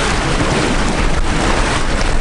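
Steady, loud rush of river water splashing along the hull of a moving boat crossing the Nile.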